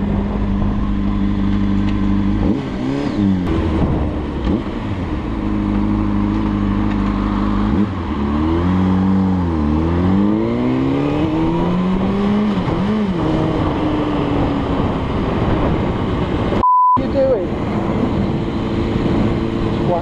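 Sports motorcycle engine heard through a helmet camera. It idles, revs up as the bike pulls away about two and a half seconds in, then runs on with several falls and rises in pitch through gear changes and throttle. A short, high censor beep cuts in near the end.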